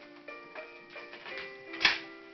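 Background music playing, with held notes changing every fraction of a second, and one short sharp noise near the end.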